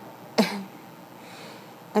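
A single short cough about half a second in, then quiet room tone.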